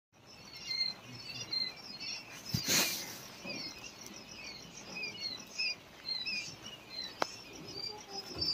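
Many quail chicks peeping, with short high chirps overlapping continuously. A brief burst of noise comes about two and a half seconds in, and a single sharp click near the end.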